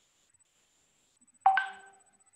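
A single electronic chime, one bright ding about a second and a half in that fades away over half a second.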